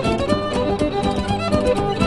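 Old-time French Canadian fiddle playing a reel, a stream of quick running notes over lower sustained tones.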